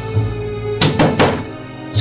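Three quick knocks on a hotel room door, about a second in, over background music.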